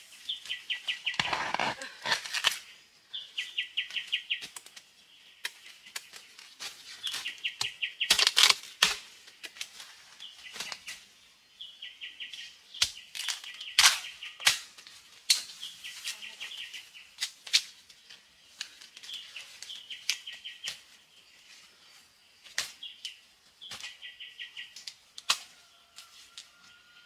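A bird repeats a short, rapid trill every three to four seconds. Sharp knocks of a knife hacking into bamboo shoots and the crackle of dry bamboo leaf litter come in between, the loudest knocks around eight and fourteen seconds in.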